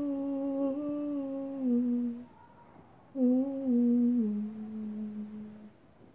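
A woman humming the closing phrases of a song, unaccompanied: two long held phrases, each stepping down in pitch, with a pause of about a second between them.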